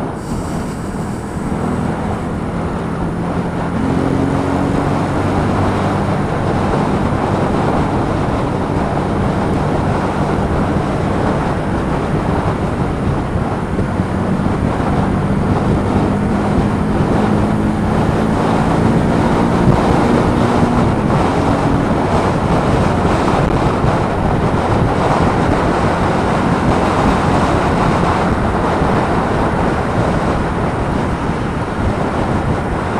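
Wind noise from an open helmet vent, picked up by a mic inside the helmet, over the Kymco K-Pipe 125's single-cylinder engine pulling the bike along at road speed. The engine note climbs slowly and drops back about two-thirds of the way through.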